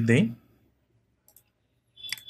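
A short spoken word ends, then near silence broken by a faint single computer mouse click about a second later and another sharper click at the very end.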